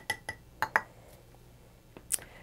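Metal measuring spoon tapping and clinking against the rim of a glass mason jar several times in the first second as cornstarch is knocked in, with a brief glassy ring. One light knock follows near the end.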